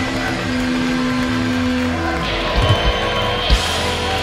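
Live band music: electric and acoustic guitars and bass holding a sustained chord, with a few heavy low hits a little past halfway through.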